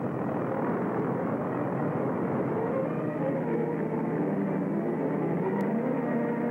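Propeller aircraft engines droning steadily, with a faint low tone coming in over the last couple of seconds.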